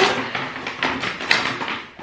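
A cardboard box being opened by hand: its flaps and the packaging inside rustle and crackle in a quick run of short sounds, sharpest near the start and again just past halfway.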